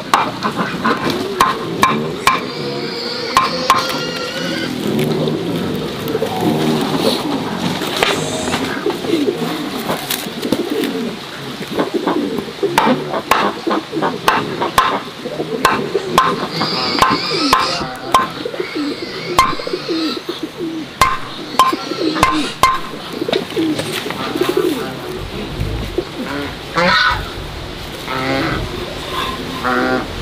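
Birds cooing and calling, with frequent sharp clicks and knocks from handwork on chit-grass brooms.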